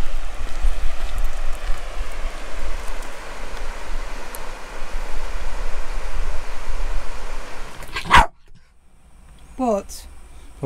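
Wind buffeting the microphone over the rush of a river for about eight seconds, ending in a brief loud burst and a sudden drop to quiet. Near the end a West Highland terrier gives one short bark.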